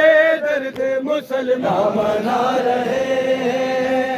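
Men's voices chanting a noha, an Urdu mourning lament, in long held, wavering notes.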